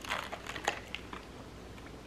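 A man drinking from a plastic cold-drink cup: a few faint swallows and plastic crinkles in the first second or so.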